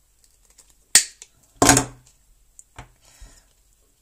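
Diagonal side cutters snipping through the DC cable of a MacBook MagSafe power adapter, one sharp snap about a second in. A brief voice sound follows, then light clicks and rustling as the cut parts are handled.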